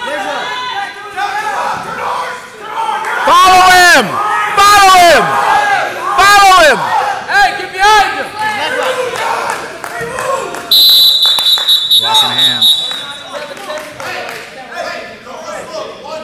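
People shouting at a heavyweight wrestling bout in a gym, with several loud, drawn-out yells. About eleven seconds in, a high steady tone sounds for about two seconds.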